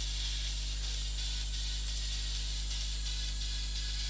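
A steady low electrical hum with an even hiss over it, unchanging throughout, with no clicks or other events.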